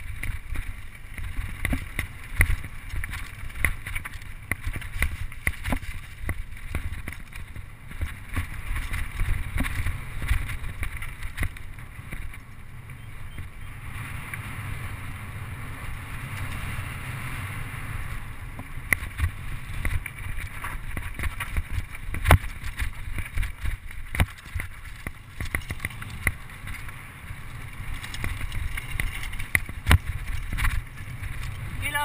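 Mountain bike ridden over a rough dirt trail, heard from a handlebar-mounted camera: wind buffeting the microphone with a low rumble, and a constant rattle of short knocks as the bike jolts over bumps, one sharp knock about two-thirds of the way through.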